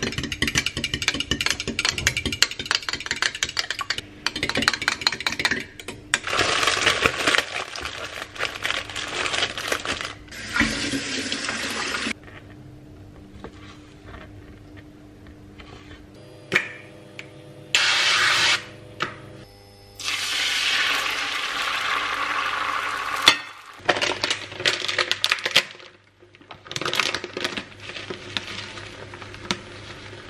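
Food-preparation sounds in a string of short clips: a metal spoon stirring and clinking in a drinking glass, then a knife chopping cherry tomatoes on a chopping board, with soft background music underneath.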